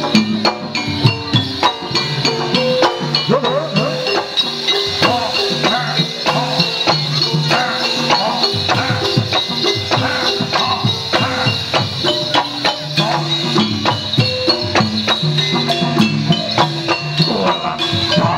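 Gamelan-style accompaniment for a buto gedruk dance: metallophones play a stepping melody over drum strokes, with a continuous high jingling from the dancers' rows of ankle bells (krincing) as they stamp.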